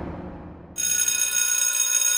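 An electric school bell rings with a steady, high ringing that starts suddenly less than a second in. Before it, the tail of a hit fades away.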